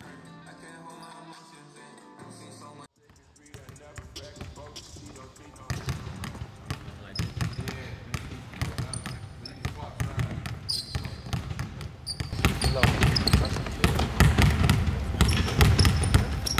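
Background music for the first three seconds, then cut off. After that a basketball is dribbled again and again on a hardwood gym floor, with short sneaker squeaks, getting louder and busier from about twelve seconds in.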